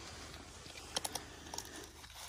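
Faint, scattered clicks and crunches of raccoons eating almonds in the shell, a few sharp ticks about a second in.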